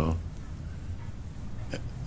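A pause in an old spoken-word recording of a man talking. The recording's steady low hum and faint hiss carry through, with a short click near the end just before he speaks again.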